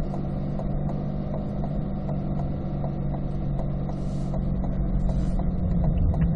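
Inside the cabin of a 2020 Corvette C8, the mid-mounted 6.2-litre V8 runs at low speed with a steady low hum while the left turn signal ticks, just under three ticks a second.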